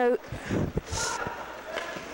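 Faint ice-hockey rink sounds during play: a short scrape of skates on the ice about a second in, a few light clicks of sticks and puck, and distant voices.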